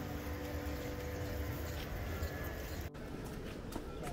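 Faint outdoor ambience: a low rumble with indistinct voices. About three seconds in it breaks off abruptly to a lighter background with a few faint clicks.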